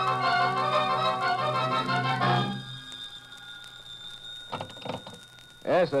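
An organ music bridge plays held chords that swell and end about two seconds in, marking a scene change in the radio drama. A quieter stretch with a faint lingering tone follows, and a voice comes in at the very end.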